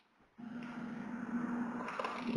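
Dead silence, then, about half a second in, a faint steady hum over a soft hiss comes in and holds: background noise on an open webcast microphone line.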